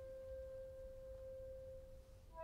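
A single soft woodwind note from the orchestra, held steadily, over a faint low rumble.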